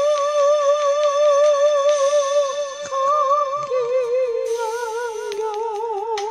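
A countertenor singing long held notes with a wide, even vibrato over a karaoke backing track, with the app's concert echo effect on the voice. The pitch steps down a couple of times in the second half.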